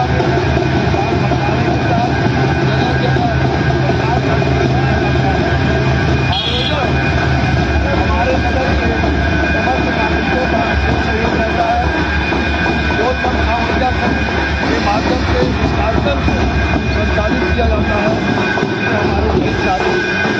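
Loud, continuous din of a street procession: many voices mixed with amplified music from a DJ sound system, whose steady low bass drops in pitch about seven seconds in.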